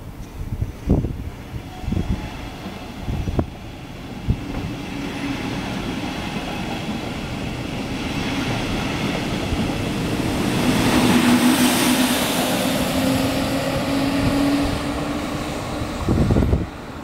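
An electric S-Bahn train of double-deck coaches passing underneath, its rolling noise building from a few seconds in with a steady low hum and loudest about two-thirds of the way through. A few low thumps, like wind on the microphone, come before the train arrives.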